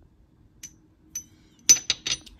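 Small doll-size ceramic teacup clinking against its saucer as it is set down: a couple of faint taps, then two sharper ringing clinks near the end.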